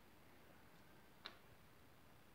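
Near silence, with one faint, short click a little past the middle.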